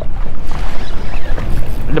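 Wind rushing and buffeting over the microphone on an open boat, with splashing from choppy water around the hull.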